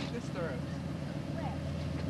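Faint, scattered bits of background talk over a steady low hum.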